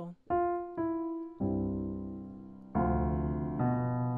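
Piano playing in the key of C: two single notes, then a sustained chord about a second and a half in, a new, louder chord near three seconds, and a change of chord shortly before the end.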